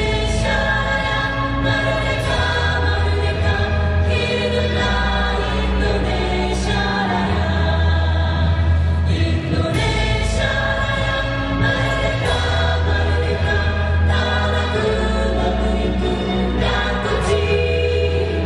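A choir singing with musical accompaniment, in slow, long-held chords over a bass line that moves every few seconds.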